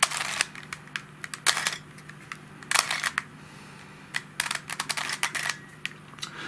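Plastic Helicopter Cube twisty puzzle being turned by hand: edge pieces clicking as they rotate and snap into place, in about four quick bursts of sharp clicks, the longest run near the end.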